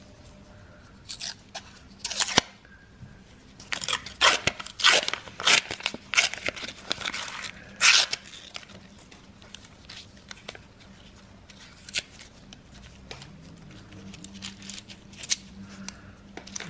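Scissors cutting into a paper coin roll, then the paper wrapper being torn and pulled off: a run of sharp crunching rips and crackles over the first eight seconds or so, followed by faint rustling and clicks.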